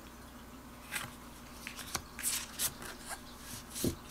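Tarot cards being handled: a few short, soft slides and taps of card stock against the deck, about a second in and again between two and three seconds, over a faint steady hum.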